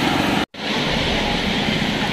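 Steady wash of sea surf on a beach, broken by a sudden dropout about half a second in.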